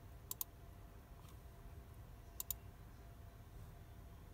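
Computer mouse button clicking: two quick double clicks about two seconds apart, over a faint low hum.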